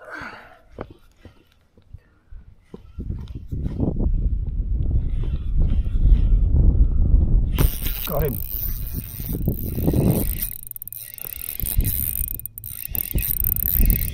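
Daiwa TD Black MQ 2000 spinning reel being cranked: a steady high whirr with fine ticking as line winds in, which sets in about halfway through. Wind rumbles on the microphone underneath from a few seconds in.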